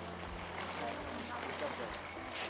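Faint voices talking over a steady low hum.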